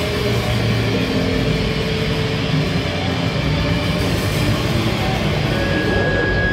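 Live instrumental rock band playing loud and dense: electric guitars, bass and drums. A steady high tone comes in near the end.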